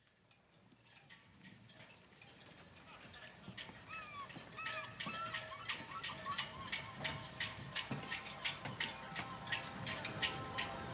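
A field recording of natural sounds fades in: a patter of drips and clicks, with short chirping calls that rise and fall about halfway through. Soft steady tones of the music begin near the end.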